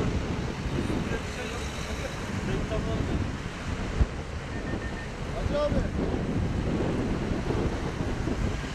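Wind buffeting the microphone over the noise of road traffic passing, with a brief sharp thump about four seconds in.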